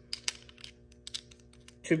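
Two handheld metal archery release aids, a Nock On Silverback and a green thumb release, clicking and tapping against each other as they are handled and stacked together: a quick, uneven run of small sharp clicks.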